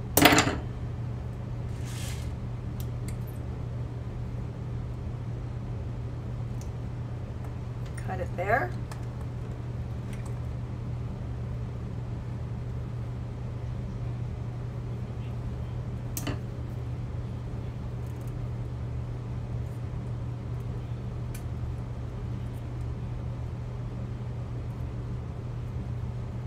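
Small metal hand tools clicking against a steel bench block while wire is worked: a sharp clack at the start and fainter ticks about 2 and 16 seconds in, over a steady low hum.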